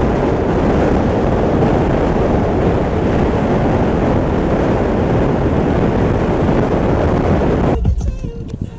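Wind rushing over the camera microphone held at the open window of a moving car, a loud steady buffeting that cuts off abruptly just before the end.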